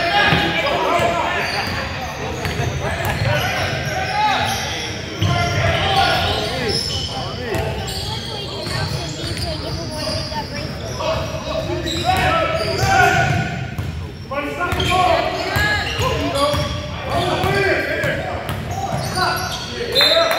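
A basketball being dribbled and bouncing on a hardwood gym floor during a pickup game, amid the voices of players and onlookers calling out, all echoing in a large gym.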